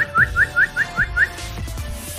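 Alexandrine parakeet giving a quick run of short rising whistles, about five a second, stopping a little over a second in, over background music.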